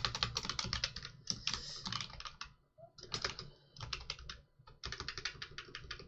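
Typing on a computer keyboard: rapid runs of key clicks in several bursts, with short pauses about two and a half seconds in and again near the middle of the fourth second.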